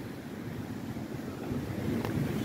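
Steady rushing noise of wind and sea surf, with wind rumbling on the microphone. It grows a little louder near the end.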